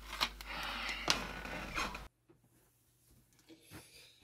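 A plastic DVD case being handled: a few sharp clicks with rubbing and rustling for about two seconds, then an abrupt cut to near silence with a couple of faint ticks near the end.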